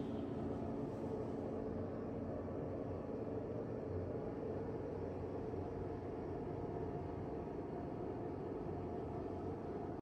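Steady low mechanical hum with a soft even hiss: indoor room tone.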